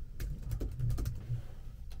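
Typing on a laptop keyboard: a run of light, irregularly spaced key clicks.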